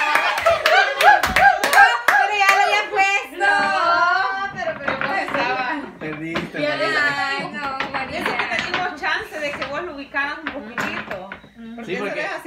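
Several young women laughing loudly and shrieking, with hand clapping in the first couple of seconds, then excited laughter and chatter carrying on.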